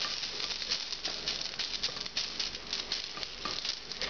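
Shrimp and fish stock sizzling and crackling in a hot pot as it deglazes the dry potato curry stuck to the bottom, with a spatula stirring and scraping through it.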